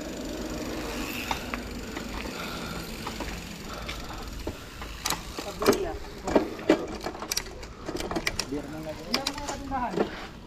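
Steady rush of wind and tyre noise from a mountain bike rolling along a concrete road. From about five seconds in, other riders' voices call out in short bursts, with sharp clicks among them.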